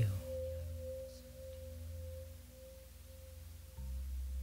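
Meditation background music: a single sustained pure tone that slowly fades out, over a low steady drone.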